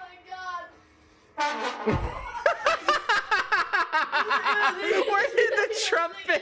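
Loud laughter in rapid, pulsing bursts that starts suddenly about a second and a half in and runs on.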